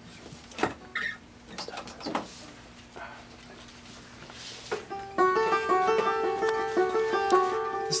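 A few scattered clicks and knocks from players handling their instruments. About five seconds in, a plucked string instrument starts picking a quick run of short notes.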